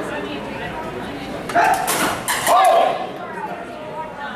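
Two loud shouts, about one and a half and two and a half seconds in, during a rapier-and-dagger fencing exchange, with a few sharp knocks between them as the blades meet.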